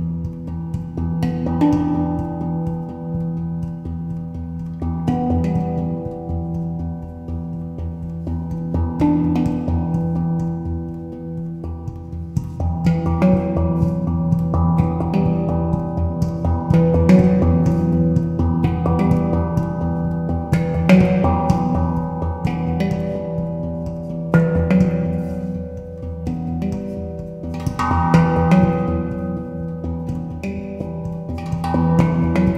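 Steel handpan (pantam) played with the fingers: struck notes ring and run into one another over a steady low tone. The playing gets busier and louder about twelve seconds in.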